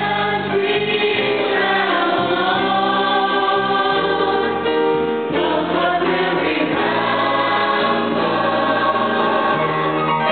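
Mixed school choir singing sustained notes in harmony, with a female soloist leading on a handheld microphone.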